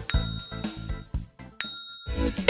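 Two bright chime-like dings about a second and a half apart, each struck sharply and ringing on, from an outro transition sound effect, with light percussive hits of background music between them.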